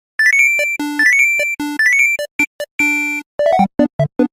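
Playful electronic intro jingle: quick runs of rising beeping notes and chime-like tones, turning into a faster, lower bouncing tune in the second half.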